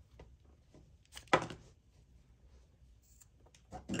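Scissors snipping through crochet yarn: one short, sharp snip about a third of the way in, with a few faint handling ticks around it.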